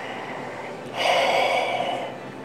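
A man imitating someone's heavy breathing through the nose: a quieter breath, then a loud, long breath about a second in.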